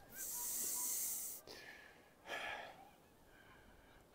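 A man's heavy breath out, a hissing exhale of a little over a second, then a shorter, softer breath about a second later.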